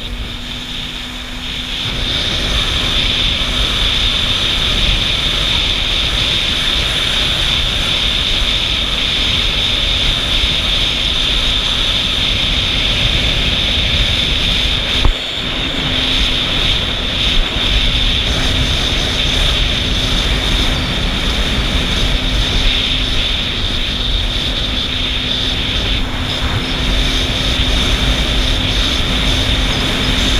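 Yamaha jet ski (personal watercraft) engine running at speed with a steady drone. It picks up about two seconds in as it accelerates, then holds steady, with a brief dip near the middle.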